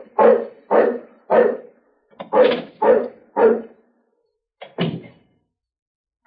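A dog barking in a run of about seven short barks, with a pause after the third and a longer gap before the last. The recording is an old, narrow-band radio recording.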